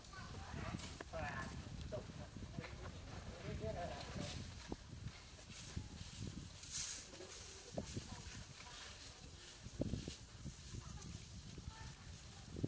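Newborn macaque giving short, wavering high squeaks, several in the first two seconds and again around four seconds in. A few soft knocks come later.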